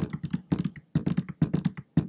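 Quick, irregular tapping, about eight taps a second.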